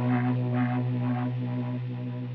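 Background music: a low sustained drone with a pulsing layer above it, slowly fading out.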